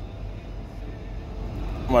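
Steady low rumble of a semi truck's diesel engine idling, heard inside the cab.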